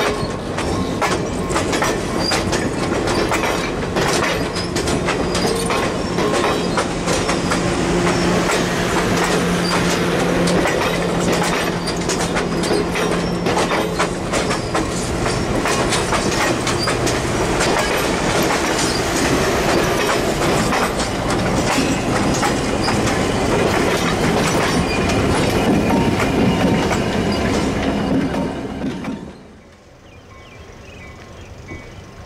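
Passenger train coaches rolling past close by, steel wheels clicking over rail joints with some wheel squeal. The sound cuts off suddenly just before the end.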